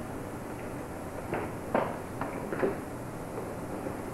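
Several short knocks over steady background hiss. The loudest comes just under two seconds in, with a few smaller ones close after it.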